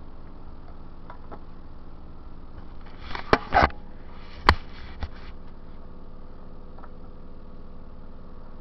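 Plastic DVD case and disc being handled: a short rustle with two sharp clicks about three seconds in, then a single sharp click and a smaller one a second or so later, over a steady low hum.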